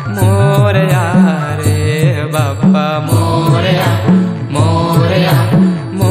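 Hindu devotional song (aarti) sung to a steady beat, with small hand cymbals striking in time.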